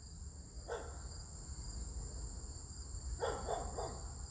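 A quiet pause with a steady high-pitched background tone running throughout. Faint mumbled speech comes about a second in and again near the end.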